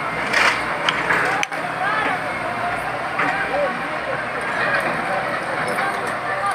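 Outdoor din of a crowd of onlookers talking, with a few sharp knocks in the first second and a half as an excavator breaks into a masonry building.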